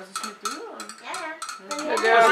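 Glass thermometer used as a stirring rod, clinking against the inside of a glass flask's neck in a quick run of light ticks, several a second.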